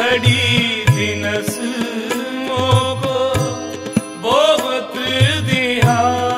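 Shabad kirtan: harmoniums hold steady chords under a man's singing, which slides between notes near the start and again about four seconds in. A tabla plays repeated low strokes beneath them.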